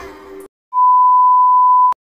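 A single steady electronic beep, one pure tone held for a little over a second and ending in a click.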